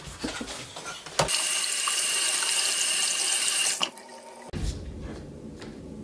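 A steady rushing hiss, like water running from a tap, lasting about two and a half seconds and cutting off suddenly, with a few knocks before it and a dull thump after.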